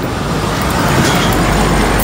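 A road vehicle passes close by, its traffic noise swelling to a peak about a second in and easing off.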